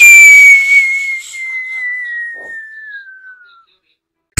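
Cartoon falling-whistle sound effect: one long whistle that starts loud and glides slowly down in pitch, fading away about three and a half seconds in, marking the figure's fall.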